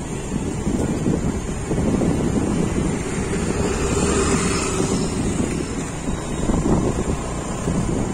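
Wind rumbling on a phone microphone over outdoor street noise, a steady low roar with no distinct events.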